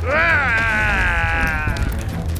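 A cartoon character's long drawn-out cry, rising at first and then slowly falling in pitch, over background music.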